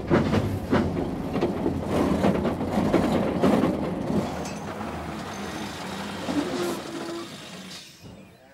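Old bus heard from inside the cabin, rattling and clattering with repeated knocks over its engine. The deep engine rumble drops away about four seconds in and the noise dies down toward the end: the bus is breaking down.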